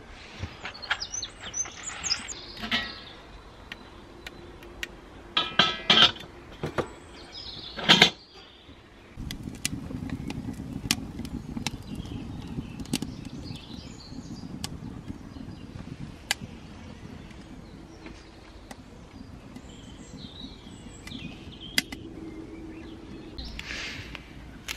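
Small wood fire of kindling catching in a garden chiminea. From about nine seconds in, sharp crackles and pops come from the burning wood over a low steady background. Before that there are a few scrapes and knocks as the wood and firelighter are handled, and faint birdsong runs underneath.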